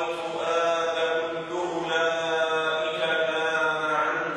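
A man's voice chanting a recitation in Arabic, holding long, drawn-out notes with brief breaks between phrases, heard through a microphone.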